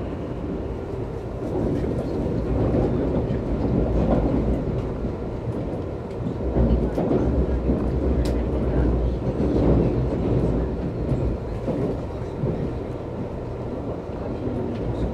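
Nankai 30000 series electric train running at about 58 km/h, heard from the front of the cab: a steady rumble of wheels on rail that swells a little midway, with one sharp click about eight seconds in.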